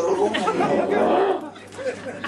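Speech: a voice talking, in the manner of the surrounding puppet-theatre dialogue.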